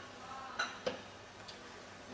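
Quiet room tone with a few faint, scattered clicks, the sharpest just under a second in.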